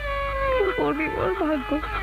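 A high, drawn-out wailing voice, with notes held long and then sliding and breaking in pitch, like keening in grief.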